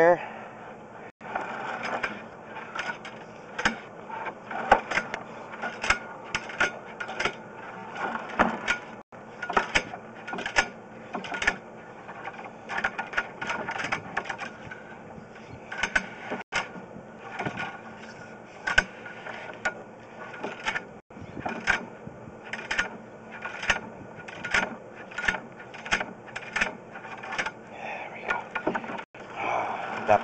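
Irregular clicking and knocking from a sewer inspection camera being pushed along a sewer line on its push cable, over a steady low hum.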